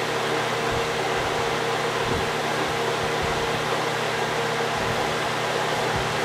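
Steady background hum with an even hiss, holding one level throughout with a few faint steady tones in it: machine or room noise, with no distinct event.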